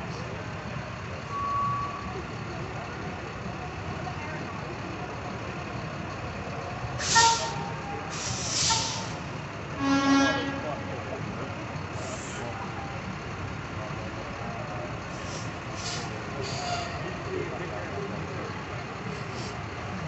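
Heavy boom truck rumbling past at low speed, with sharp air-brake hisses about seven and eight and a half seconds in and a short horn blast about ten seconds in; smaller hisses follow later.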